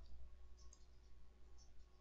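A few faint computer mouse clicks over a low, steady room hum, as box pieces are selected and dragged on screen.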